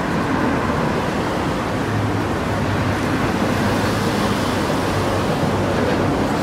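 Steady urban background noise, an even wash like distant traffic, with a low hum in the middle.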